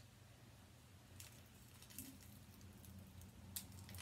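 Near silence: room tone with a few faint clicks and rustles of a small toy figure being picked out of its plastic wrapping by hand.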